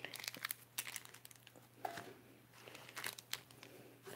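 Foil wrappers of Pokémon Ancient Origins booster packs crinkling faintly as the packs are handled and shuffled in the hands, in scattered short, irregular crackles.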